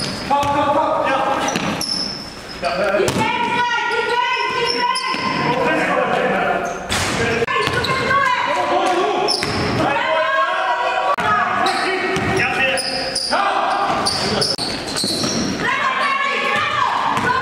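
A basketball being dribbled on a hardwood gym floor during play, with sneakers squeaking on the court and players' voices calling out between bounces.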